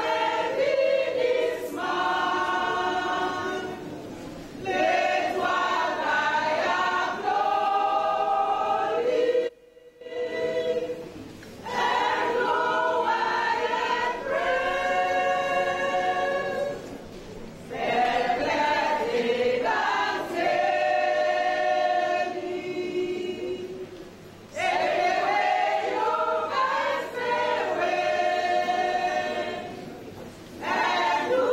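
A choir of women singing a sacred song unaccompanied, in phrases of a few seconds with short pauses between them, the longest break about ten seconds in.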